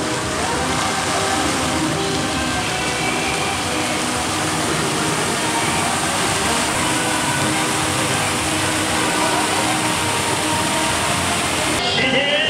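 Fountain jets spraying into a pond: a steady rush and hiss of falling water, with voices and music faint beneath it.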